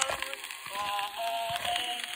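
Early-1900s acoustic phonograph recording of a popular song playing: a wavering melody line over light band accompaniment with a regular beat. It sounds thin, with almost no deep bass.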